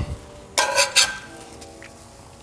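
Metal spatula scraping and clinking against a cast-iron skillet as toasted buns are lifted: two short, sharp strokes about half a second to a second in.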